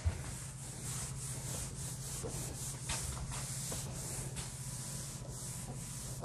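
A cloth wiping a whiteboard clean, a steady run of quick rubbing strokes, after a short knock at the very start.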